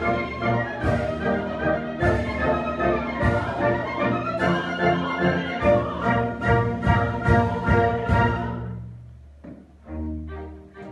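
Opera orchestra playing a lively passage with sharp, regular accented beats, the strings to the fore. It thins and quietens about nine seconds in.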